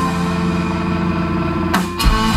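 Live rock band with saxophone holding a sustained chord while the drums drop out, then a single sharp drum or cymbal hit near the end.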